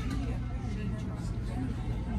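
Restaurant dining-room ambience: a steady low hum with indistinct chatter from other diners.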